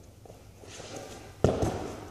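Feet landing on a padded gym floor as a gymnast comes down from a spinning aerial: soft scuffs of footwork, then one sharp landing thud about one and a half seconds in.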